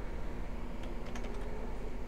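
Computer keyboard being typed on, a handful of scattered, irregular keystrokes.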